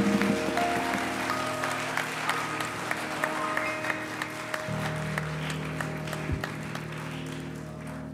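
Congregation applauding over sustained organ chords. The clapping thins out toward the end, and the organ moves to a lower held chord about five seconds in.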